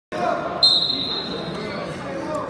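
Referee's whistle blown once to start a wrestling bout: a single steady, high-pitched blast about half a second in that trails off over the next second, with voices echoing in a gym behind it.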